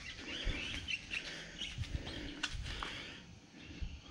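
Faint birds chirping over low outdoor background noise, with a few soft low thumps.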